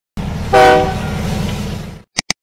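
Intro sound effect: a low, pulsing rumble with a short horn-like chord about half a second in, fading away toward the end.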